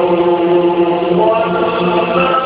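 A male Quran reciter's voice holding a long, steady melodic note in tajwid-style chanted recitation.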